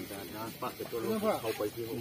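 People's voices talking, louder about halfway through.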